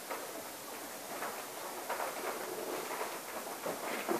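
Lacquered MDF TV stand gliding across the floor as it is swung back into place: a faint, uneven rolling noise with a few light knocks.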